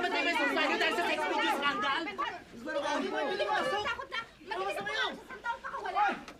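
Several people talking over one another at once, a jumble of overlapping voices.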